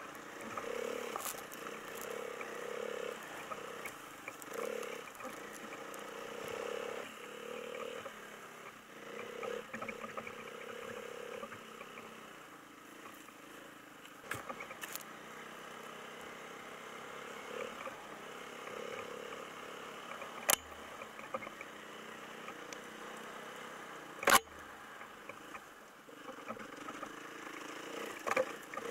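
Snowmobile engine running while riding along a snowy trail, its note rising and easing in uneven pulses. Two sharp knocks stand out in the second half.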